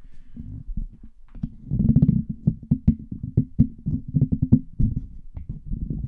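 Handling noise from a handheld microphone as it is gripped and fitted into the holder on a boom stand, heard through the microphone itself: a quick, irregular run of knocks, rubs and low thumps, heaviest about two seconds in.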